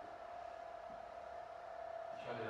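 Quiet room tone with a steady mid-pitched electrical hum.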